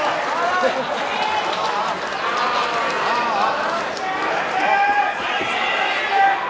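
Raised men's voices shouting and calling out over crowd noise, with a few long held yells near the end.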